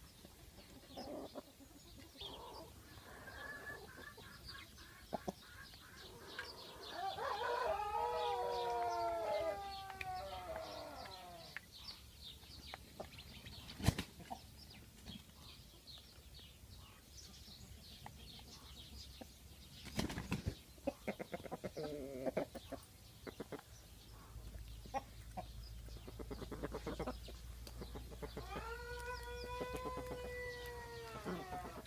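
Kosovo tricolour (Tringjyrshe) chickens: a rooster crows once at length about a quarter of the way in and again near the end, with hens clucking in between. A few sharp knocks stand out, one about halfway through.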